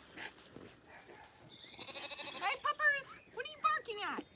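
Zwartbles lambs bleating: several high, wavering calls in quick succession from about halfway through, after a few faint ticks and rustles.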